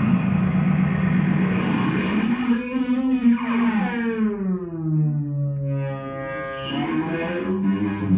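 Experimental electronic music from a handheld electronic instrument played through an amplifier: a sustained, distorted pitched drone. About a third of the way in its pitch slides slowly downward, and near the end it settles back into a steady, harsher tone.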